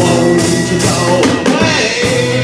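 Live band playing an instrumental passage between sung lines: acoustic guitar, a second guitar and fiddle, over a small drum kit with cymbals keeping a steady beat.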